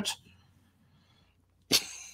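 A voice trails off into near silence; about a second and a half later a person lets out a sudden, sharp burst of breath that fades into a short hiss.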